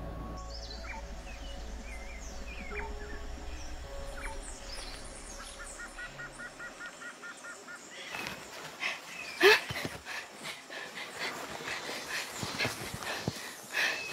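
Forest ambience with birds chirping, one in a quick repeated trill, over a low hum that fades out about seven seconds in. From about eight seconds, an irregular run of crackles and knocks, with one loud sharp sound a second and a half later.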